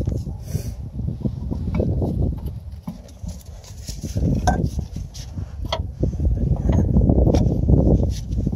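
Irregular clicks, knocks and rustling as a new CV axle is handled and worked into place through the front suspension, with gloved hands and metal parts bumping together.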